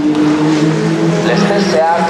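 Single-seater race car engines running out of sight, a steady droning note that drops in pitch about half a second in, with a public-address announcer's voice talking over it.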